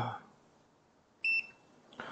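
A single short, high electronic key beep from a KKMOON KKM828 handheld graphical multimeter as one of its buttons is pressed, a little over a second in.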